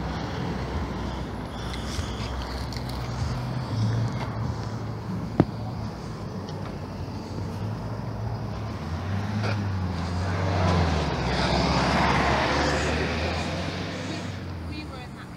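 Roadside traffic: a steady low engine hum, with a vehicle passing that swells and fades in the second half. A single sharp click a little over five seconds in.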